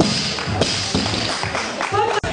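Barbell with rubber bumper plates dropped onto the lifting platform after a lift: a sharp impact at the start, then the plates clattering and settling, over background music.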